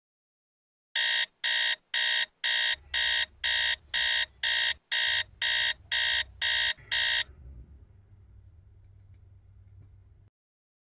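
Electronic alarm beeping, thirteen high beeps at about two a second, cut off suddenly about seven seconds in, leaving a low hum.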